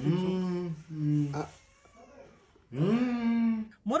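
A woman's drawn-out, whiny groaning as she is being woken: one long held cry in the first second and a half, a pause, then another that rises and holds until near the end.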